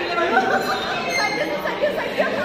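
Speech only: several people talking at once, with one woman's voice loudest.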